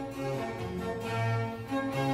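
Period-instrument string orchestra playing a fast movement of a symphony in G minor, violins over a moving cello and bass line.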